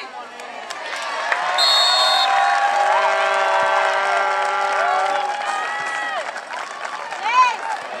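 Crowd cheering and yelling at a goal in a soccer match, swelling about a second in and easing off after about six seconds. A brief shrill whistle sounds about two seconds in.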